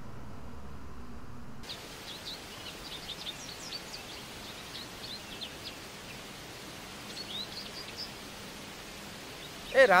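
A low, steady hum that cuts off a little under two seconds in, then many short, high bird chirps over a steady outdoor hiss. A voice calls out loudly at the very end.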